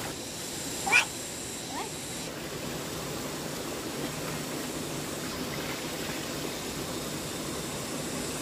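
Shallow water running steadily over a concrete slab, with splashing as bunches of leafy greens are rinsed in the current. A brief high rising sound about a second in is the loudest moment.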